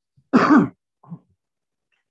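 A man clearing his throat with a short cough, heard over a video-call line, followed by a smaller one about a second in.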